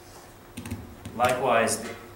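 A few quick clicks of laptop keys, followed about a second in by a short stretch of voice.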